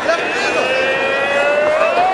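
Fight-arena crowd shouting, with one spectator holding a long drawn-out yell that rises slightly in pitch near the end.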